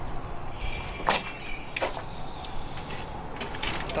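A glass shop door being pushed open, with a few short clicks and knocks over a steady hiss of outdoor street noise.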